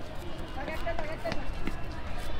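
Knife chopping green chillies, a few short sharp taps of the blade, with people talking in the background.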